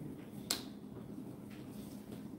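A single sharp snap about half a second in as a handloom cotton saree is flicked open and shaken out, the cloth snapping taut.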